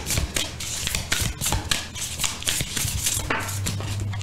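Hand-shuffling of a Sacred Destiny Oracle card deck: a continuous run of quick card flicks and slaps, several a second.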